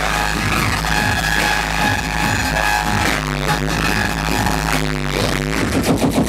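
Dubstep played loud over a club sound system during a live DJ set, with a constant deep sub-bass under held synth tones.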